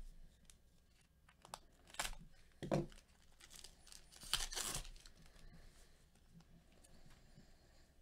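A foil-wrapped Panini Chronicles baseball card pack being torn open and crinkled. There are short tears about two seconds in and a longer tear at about four and a half seconds, followed by faint handling of the cards.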